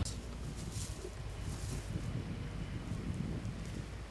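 Wind rumbling on the microphone in an open field, with a brief faint rustle of crop stubble a little under a second in as a hand digs into the loosened soil.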